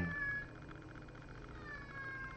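Domestic cat meowing twice: a high call that fades out in the first half-second, then a longer call falling in pitch in the second half. The owner says she is sad because her mom is away.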